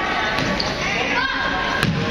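A basketball bouncing on a gym floor, with two sharp bounces about a second and a half apart, among the voices and shouts of players and spectators in the gym.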